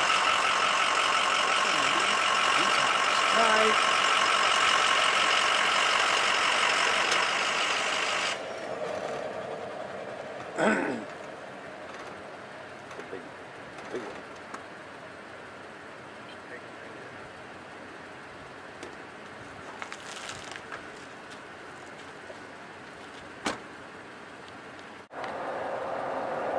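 A vehicle's engine idling steadily, then shut off abruptly about eight seconds in. A quieter low hiss remains, with a short laugh a few seconds later and a couple of faint clicks.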